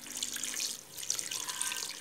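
Water pouring in a steady stream from a plastic bottle into a metal cooking pot of sugar.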